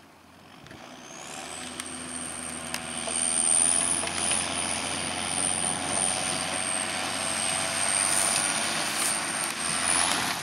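John Deere 6930 tractor's six-cylinder diesel engine running steadily as it tows a muck spreader, growing louder over the first few seconds as it comes closer. A high, steady whine rides over the engine from about a second in.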